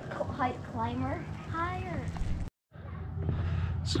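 Faint voices of people talking in the background, then a brief total dropout where the video cuts, and a man's voice starting to speak near the end.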